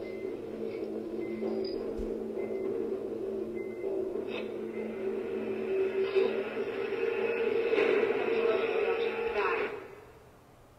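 A TV drama clip's soundtrack played back: voices over steady background music, which cuts off abruptly near the end.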